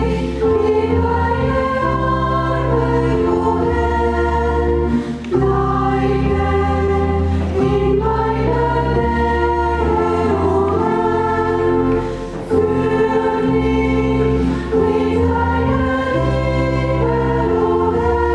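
Choir singing a hymn with pipe organ accompaniment, held chords over steady bass notes, in phrases with short breaks about five and twelve seconds in.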